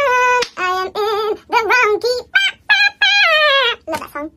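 A woman singing unaccompanied, a few short phrases with a wavering vibrato ending on a longer held note near the end; the track is sped up, so the voice sounds higher and quicker than natural.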